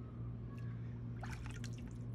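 A steady low hum in the background, with a short run of light clicks and taps from handling small objects about a second in.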